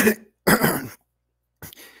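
A man coughing twice: a sharp cough at the start and a second, longer one about half a second in.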